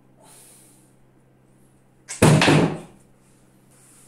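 A short soft rustle, then a loud, sudden clunk about two seconds in that dies away within a second: a small weight plate on a loading pin hung from a hand gripper knocking down or being released.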